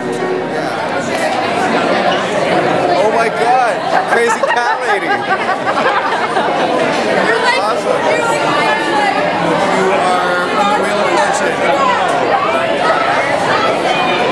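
Crowd chatter: many people talking at once in a crowded room, with music playing in the background.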